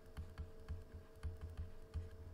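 Faint, irregular clicks and soft taps of a stylus writing on a drawing tablet, several a second, over a faint steady hum.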